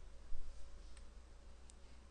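A soft bump, then two light clicks from computer input during digital painting, over a low steady hum.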